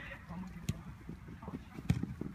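Futsal ball being kicked: a light thud about two-thirds of a second in and a louder, sharp one near the end, with players' voices faint beneath.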